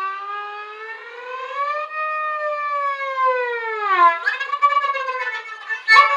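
Violin playing slow sliding notes: the pitch rises gradually, sweeps down about four seconds in, then climbs again, a wailing, siren-like glissando.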